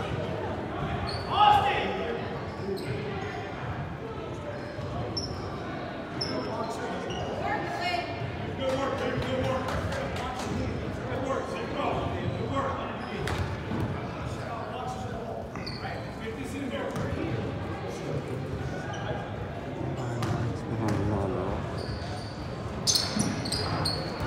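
Gym crowd ambience: many voices talking at once, echoing in a large hall, with a basketball bouncing on a hardwood floor.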